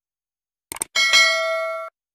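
Sound effect from a like-and-subscribe button animation: two quick clicks, then a bright bell ding that rings for nearly a second and cuts off abruptly.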